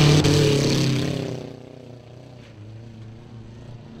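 Demolition derby car engines running, fading out about a second and a half in and leaving only a faint low hum.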